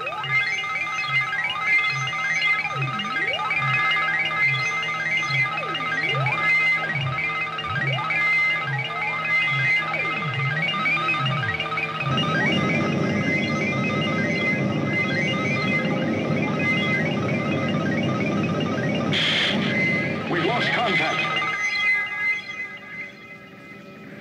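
Electronic science-fiction soundtrack: layered synthesizer tones over a regular low pulse, about three beats every two seconds, with swooping glides. About halfway through it changes to a denser, noisier churning texture, which thins and drops away near the end.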